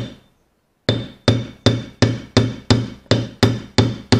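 Hammer blows on metal, knocking the old bushing out of an Ursus C-360 tractor's starter motor: one strike, a pause of about a second, then a steady run of about nine ringing blows, roughly three a second.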